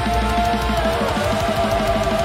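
Heavy metal song playing loudly: distorted electric guitars and drums in a fast, even rhythm, under a long held high melodic note that slides down and then holds.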